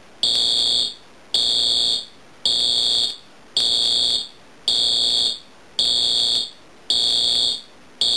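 Wheelock AS-24-MCW-FR fire alarm horn sounding in evenly spaced pulses, each about 0.7 s long with a short gap, roughly one per second, eight in all. It is a lot quieter than normal because the unit is underpowered.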